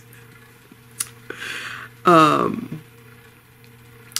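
A sharp click about a second in, then a breath and a short, loud vocal sound from a woman, falling in pitch, like the tail of a laugh or a sigh, over a faint steady hum.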